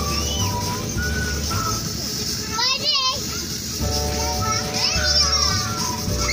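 Children shouting and shrieking as they play on an inflatable bouncy castle, over music with a steady bass beat. Two wavering, high-pitched shrieks stand out, one about halfway through and one near the end.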